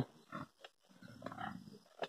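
Pigs grunting faintly: a short grunt about a third of a second in, then a longer stretch of low grunting from about a second in.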